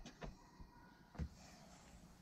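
Near silence: faint rubbing of a microfibre cloth wiped over the smooth side wall of an RV, with one short tap about a second in.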